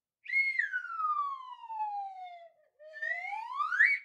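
Slide whistle sound effect: one long falling glide, a short break, then a quicker rising glide back up to a high note.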